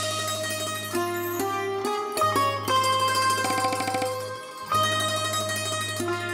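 Sitar playing a slow melodic phrase of plucked notes over a steady low drone, with a run of rapid repeated strokes near the middle. The music breaks off briefly about two seconds in and again about four and a half seconds in.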